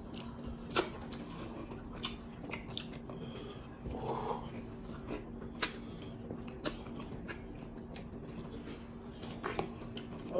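Close-up eating sounds of black fufu (amala) with egusi soup eaten by hand: scattered sharp mouth clicks and wet smacks, about one a second, with a short hum of the mouth about four seconds in.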